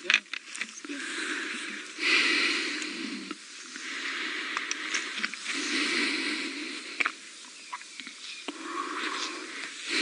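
A man's breathing close to a clip-on microphone: a run of hissing breaths, each about one to one and a half seconds, with a few small clicks near the start.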